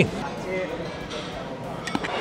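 Café ambience of distant diners talking, with a short metallic clink near the end from a fork against a metal serving pan.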